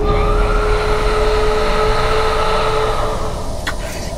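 Film-trailer sound design: a single eerie held tone over a deep, constant rumble, which fades after about three seconds. A couple of sharp clicks follow near the end.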